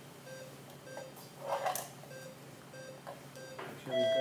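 Operating-room patient monitor beeping steadily, a short pitched beep a little under twice a second, the pulse tone that follows the heart rate. A brief rustle of activity at the surgical field comes about one and a half seconds in.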